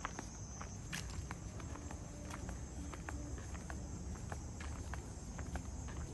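Footsteps in sandals on a concrete path, an irregular run of light steps, over a steady high-pitched chorus of night insects.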